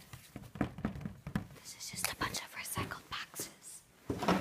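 A person whispering while handling a sheet of paper, with short rustles and scratches throughout.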